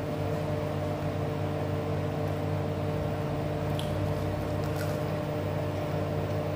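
Steady hum of a running electric appliance motor, with several constant tones. Two faint clicks come about four and five seconds in.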